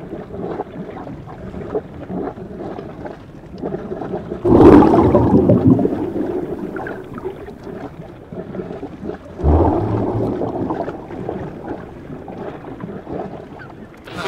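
Muffled underwater swimming-pool sound, a dull, filtered rush of water with the high end cut away. It swells louder twice, about four and a half and nine and a half seconds in.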